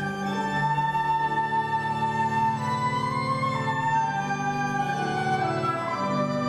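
Slow organ music: long held chords under a melody that moves in slow steps from one sustained note to the next.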